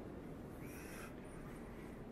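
Steady low background hum of a large, reverberant stone interior, with one brief faint high-pitched call or squeak a little under a second in.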